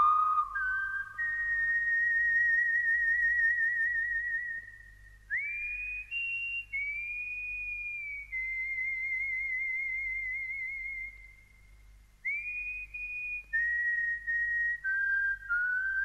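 Solo whistling of a slow western film-score melody: long held high notes with a wavering vibrato, each phrase sliding up into its first note, with two short breaks between phrases. A faint low hum lies underneath.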